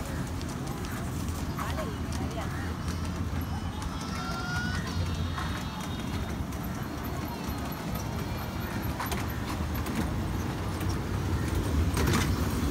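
Children's mini amusement-park train running along its track with a steady low rumble and scattered clicks, children's voices around it.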